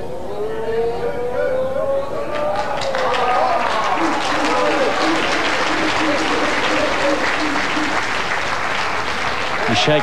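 Drawn-out, rising calls from spectators as a lawn bowl runs into the head. About two seconds in, they give way to crowd applause that runs on for several seconds.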